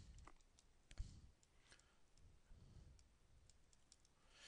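Near silence with faint, scattered clicks of a stylus tapping on a tablet while handwriting, the clearest about a second in.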